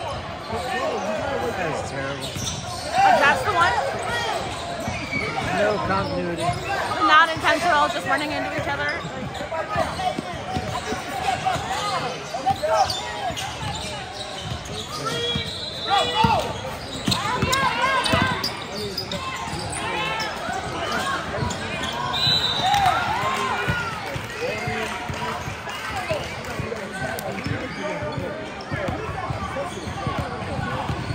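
Basketball game in a large gym: a ball dribbling on hardwood, with players and spectators calling out over echoing crowd chatter. A short high whistle blast sounds a little after twenty seconds, in play that stops for free throws.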